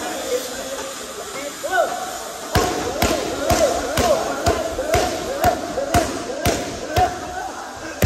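Muay Thai kicks and punches landing with sharp slaps, a steady run of about two a second that starts a few seconds in, in a large echoing gym.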